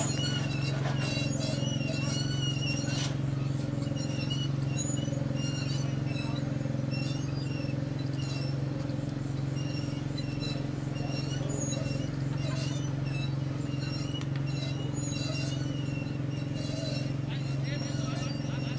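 Outdoor ambience at a cricket ground: a steady low hum, with frequent short high chirps and faint distant voices over it.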